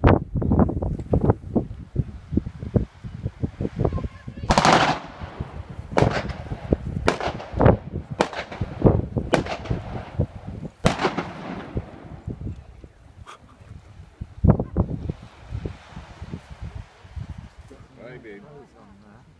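A string of sharp bangs like blank gunfire, irregular and several with a trailing echo. The biggest comes about four and a half seconds in, and they thin out near the end.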